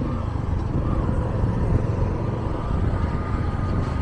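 A steady low rumble of a vehicle driving, with engine and road noise at an even level.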